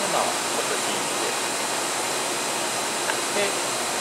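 Steady rushing machine noise, unchanging and spread evenly from low to very high pitches, with a short spoken word near the end.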